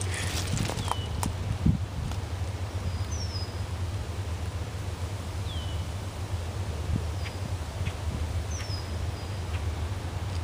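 Distant diesel locomotives working uphill: a steady low rumble. Over it a bird repeats short falling chirps every couple of seconds, and a few light knocks come in the first two seconds.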